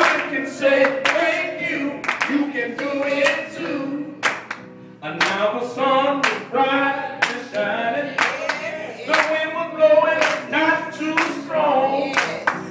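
Gospel singing, with hands clapping on the beat roughly every two-thirds of a second.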